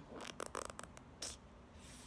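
A quick run of faint small clicks and rustles, mostly in the first second, with a couple more near the middle and end: handling noise and clothing rustle close to the microphone.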